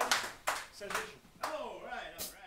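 A small audience applauding, the clapping thinning out to a few scattered claps, with voices talking and calling out over it.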